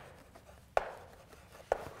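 Chalk writing on a blackboard: two sharp taps of the chalk against the board about a second apart, with fainter chalk ticks between.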